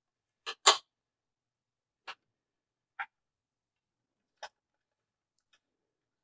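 About six small, sharp clicks at uneven intervals from hands working a rod blank and its thread on a rod-wrapping stand, the loudest a quick double click about half a second in.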